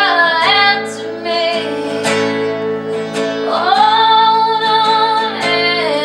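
A woman singing to a strummed steel-string acoustic guitar. In the second half she holds one long note for nearly two seconds.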